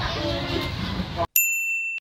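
Indistinct chatter, then the background cuts out completely and a single clear, bell-like ding rings steadily for about half a second. It is an edited-in transition chime at a cut between scenes.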